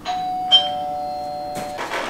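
Doorbell chime ringing a two-note ding-dong, the second note lower than the first, both notes ringing on together and fading out after about a second and a half.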